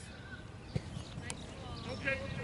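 Quiet open-air background on a grass playing field, with one short, faint thud of a soccer ball being kicked just under a second in.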